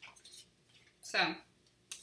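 Uno playing cards being handled: a few short, light papery snaps and rustles, a sharper snap near the end.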